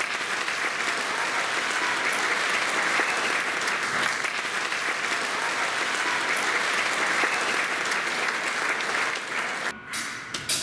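Audience applauding, a steady dense clapping that cuts off abruptly near the end.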